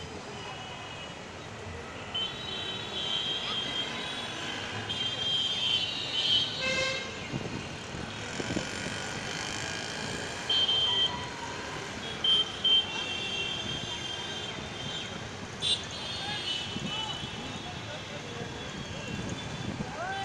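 Street traffic with vehicle horns honking again and again, high-pitched short toots and some longer held honks, over a steady background of passing traffic.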